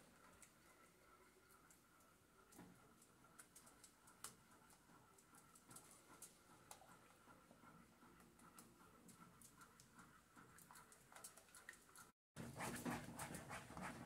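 Near silence with faint, irregular scraping and clicking of a spoon stirring a thickening cornstarch chocolate pudding in a metal pan; the stirring gets louder near the end.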